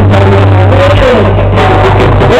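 Live band music with a heavy bass line and voices singing, very loud and flat on the recording as if the microphone is overloaded.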